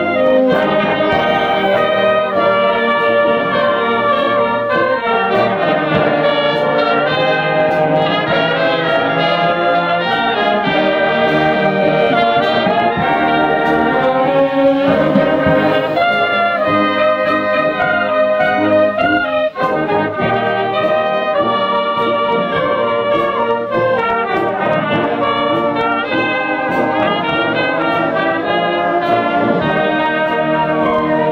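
Community concert band of brass and woodwinds playing live, with trombones and trumpets to the fore. The music has a brief break about twenty seconds in.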